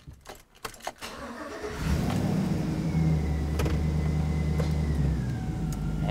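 Pickup truck engine started with the key: a few clicks, a brief crank, and it catches about two seconds in, then runs at a steady fast idle that settles lower near the end.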